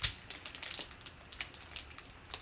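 Silver foil trading-card pack being torn open by hand: a sharp rip at the start, then light crinkling and crackling of the foil wrapper.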